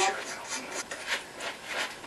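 A series of quick scrubbing strokes as paint is worked onto a stretched canvas with a brush or knife.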